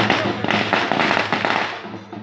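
A string of firecrackers going off in a rapid, dense run of cracks, stopping shortly before the end.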